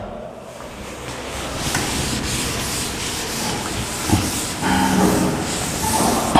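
Chalkboard duster erasing chalk writing from a blackboard: a steady rubbing and scrubbing noise.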